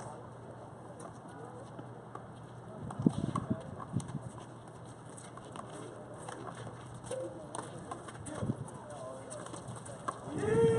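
Small rubber handball being hit by hand and smacking off the concrete walls and floor during a rally: a sharp crack about three seconds in, with further smacks near four and eight and a half seconds.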